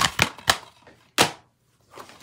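Plastic DVD cases being handled, clacking and clicking against each other: a quick run of sharp clicks in the first half second, then one louder snap about a second in.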